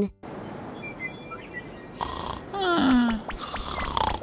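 A cartoon snore from a sleeping character, one drawn-out snore falling in pitch about two and a half seconds in. It plays over a light background that grows louder about two seconds in.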